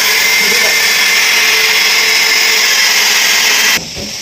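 Corded electric screwdriver drill with a spade bit running at a steady speed, boring a hole through a laminated cupboard panel. It stops suddenly near the end as the hole goes through.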